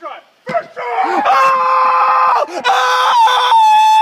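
A person's long, loud, high-pitched scream, held for about three and a half seconds and stepping up in pitch near the end.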